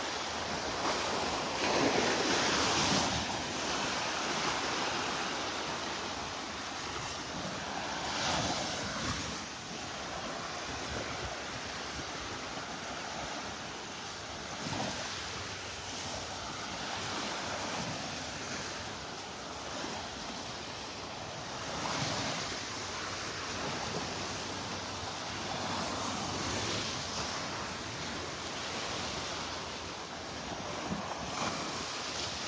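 Small Gulf of Mexico waves breaking and washing up the sand, a steady wash that swells a few times as bigger waves come in.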